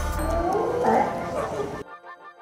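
California sea lions barking on their floating docks: several pitched calls that rise and fall, with wind rumbling on the microphone in the first half-second. The sound cuts off suddenly near the end, giving way to quiet background music with a steady beat.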